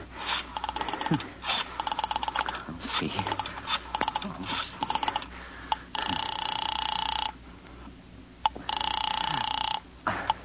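Rotary telephone dialed as a radio-drama sound effect: several runs of rapid clicks as the dial returns. Then the line rings twice, each ring just over a second long with a short pause between.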